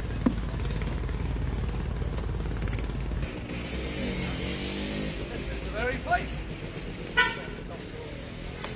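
A steady low rumble with a few sharp knocks, then street traffic with passing vehicles and voices, and a short car horn toot near the end.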